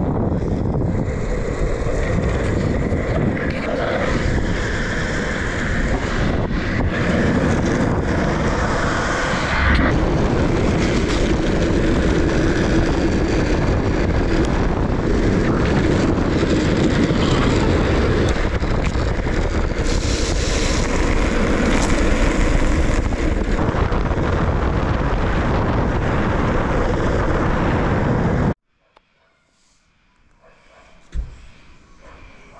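Wind rushing over the microphone, mixed with urethane longboard wheels rolling on asphalt, during a fast downhill skateboard run. The sound is loud and steady and cuts off suddenly near the end.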